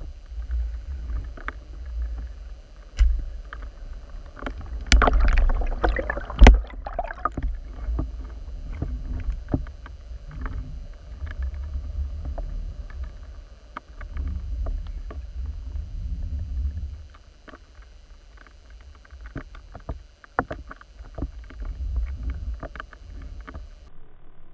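Underwater water noise picked up by a submerged camera: a steady low rumble of moving water with scattered small clicks and knocks. A louder rush of noise with sharp knocks comes about five to seven seconds in.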